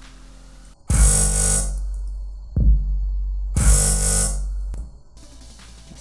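EDM drop playing back: a deep 808 bass runs from about a second in until near the end, under two bright synth stabs about two and a half seconds apart. A single bass hit with a falling pitch lands between them.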